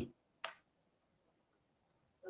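Near silence in a pause in speech, with one short faint click about half a second in.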